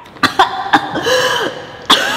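A woman coughing in several sharp fits as she comes round after nearly drowning, clearing water from her airway.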